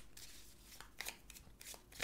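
A deck of oracle cards shuffled by hand: faint, irregular soft flicks and slaps of card on card.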